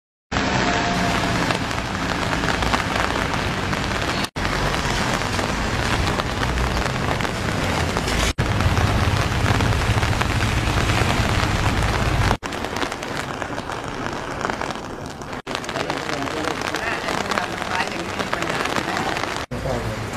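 Steady, dense outdoor noise picked up on location, a hiss with some low rumble, broken off abruptly five times where the shots are cut together.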